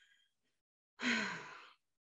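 A woman's breathy, drawn-out "uhh" hesitation sound, like a sigh, falling in pitch and fading. It comes about a second in, after a second of near silence.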